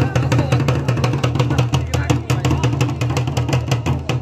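Double-headed hand drum beaten in a fast, steady rhythm of several strokes a second, with voices in the background.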